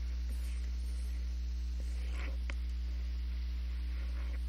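Low, steady electrical mains hum on the audio line, with a few faint clicks.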